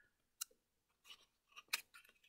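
Paper being folded and tucked by hand: a few faint, crisp crinkles and clicks, the strongest near the end.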